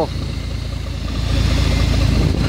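City bus engine idling with a steady low rumble, overlaid by a steady hiss of compressed air escaping from leaking hoses in the bus's air system. The leak is a fault that can cost the bus its air brakes.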